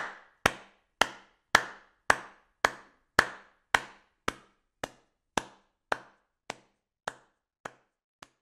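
A steady series of sharp knocks, a little under two a second, each with a short ringing tail, gradually getting fainter toward the end.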